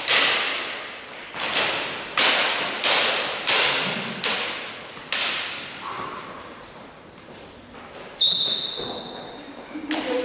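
Steel training longswords clashing in sparring: a quick run of sharp blade strikes, about seven in the first five seconds, each echoing in a large hall. About eight seconds in comes a louder clash that leaves the steel ringing with a high metallic tone.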